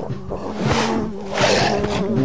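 Cartoon soundtrack: background music with two short lion-like roar sound effects, about half a second in and about a second and a half in.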